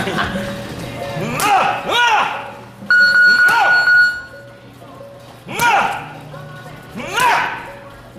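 Boxing punches landing on focus mitts and a padded body protector during a mitt drill, each hit with a short high sound that rises and falls in pitch. About three seconds in, a steady electronic beep sounds for about a second.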